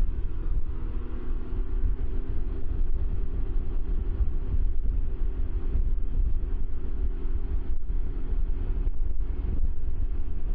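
Wind rushing over a helmet-mounted microphone, loud and steady, with the engine drone of a Can-Am Ryker three-wheeler running underneath as it gains speed on the highway.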